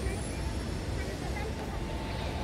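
Busy city street: a low, steady rumble of traffic with faint, indistinct voices of passers-by.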